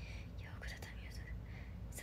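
A woman whispering a few breathy, unvoiced syllables under her breath, over a faint low hum.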